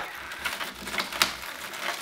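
Irregular clicks and crackles from a frozen Stretch Armstrong toy, its rubber skin and frozen starch filling, as gloved hands twist and pull at its arm; the sharpest click comes a little past halfway. The toy is just starting to thaw.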